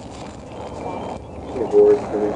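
Steady background noise, then a short stretch of a person's voice near the end.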